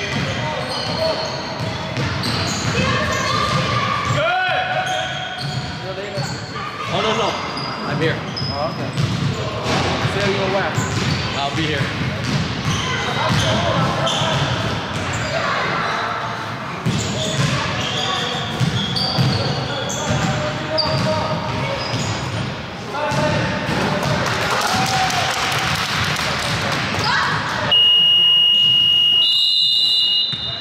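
Youth basketball game in a large echoing gym: a ball being dribbled, sneakers squeaking on the hardwood, and children and adults calling out. Near the end a loud, steady, high-pitched tone sounds for about two seconds.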